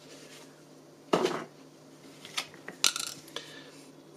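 Handling noises from a leather phone case and its packaging being picked up on a tabletop: a brief rustle about a second in, then a few light clicks and clinks near the end.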